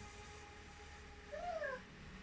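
A single short, high vocal cry, rising and then falling in pitch over about half a second, well after the start. It comes from a small child or a cat.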